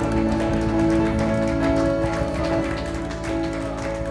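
A live worship band plays with held keyboard chords and guitar, over light, rapid percussion taps.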